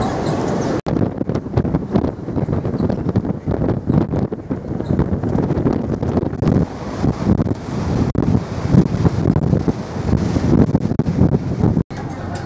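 Wind buffeting a camera microphone on a ferry's open deck, a gusty rumble that rises and falls, with the sound briefly cutting out about a second in and again just before the end.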